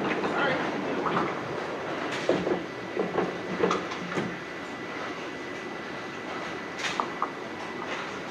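Duckpin bowling alley din: balls rolling down the lanes with a steady rumble, and scattered sharp clatters of pins and balls knocking together. Voices murmur in the background.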